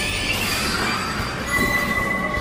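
Sci-fi energy sound effect: a bright hissing surge with shimmering high tones, then a steady high ringing tone starting about a second and a half in.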